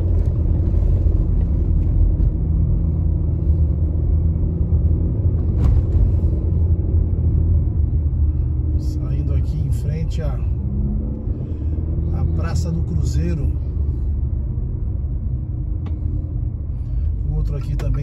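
Car engine and tyre noise heard from inside the cabin, a steady low rumble as the car drives uphill.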